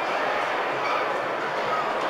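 Hubbub of a busy indoor public space: many voices blending into a steady wash, with a few short higher-pitched calls.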